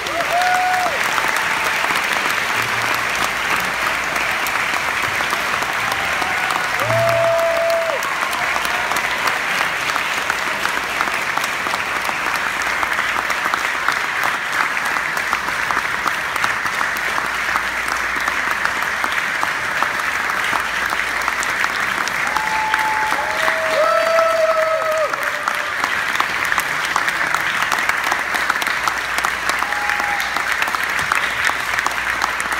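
Audience applauding steadily and loudly at the end of a band piece, with a few short calls from the crowd scattered through the clapping.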